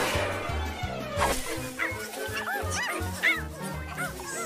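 Cartoon background music with a bouncing bass line, hit by two sudden noisy accents near the start and about a second in; over it, in the second half, a quick run of short yelping cries that rise and fall in pitch, dog-like.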